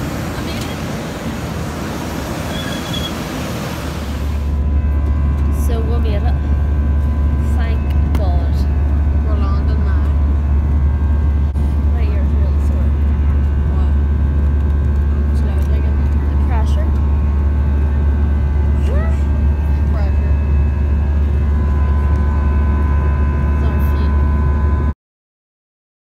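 For the first few seconds, a broad rushing noise of wind and airport noise on the apron. From about four seconds in, the loud, steady, low drone of a jet airliner's cabin in flight, with faint voices under it.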